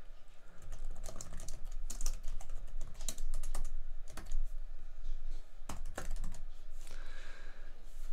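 Typing on a computer keyboard: a run of irregular keystrokes, several a second, with a few louder key presses among them.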